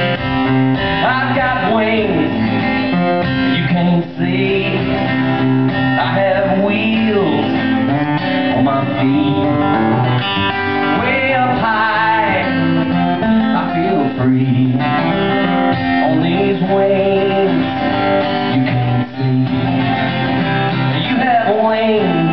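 Acoustic guitar strummed steadily under a harmonica played from a neck rack, an instrumental break between sung lines.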